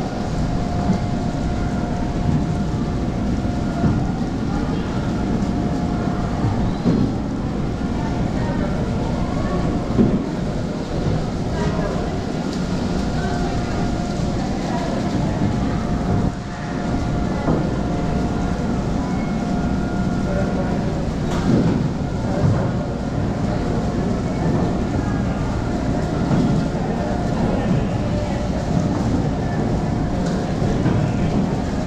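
Blower of an enclosed wind booth running steadily, a continuous rush of air with paper pieces whirling and fluttering inside the clear walls, and a steady whine coming and going above it.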